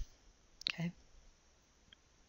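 A sharp computer-mouse click, followed at once by a short spoken "okay", then a faint tick near the end over quiet room tone.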